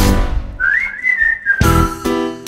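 Whistled melody in a pop song's instrumental break: one phrase that rises, holds, then slides down in pitch over a sparse backing, with full band chords struck again near the end.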